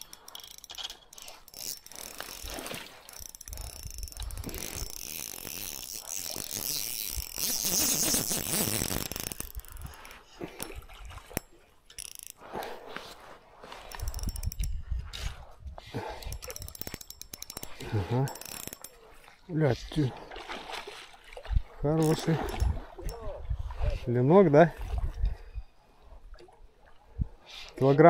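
Spinning reel cranked against a hooked fish, its gears rattling in a dense run for the first ten seconds or so, then in shorter bursts.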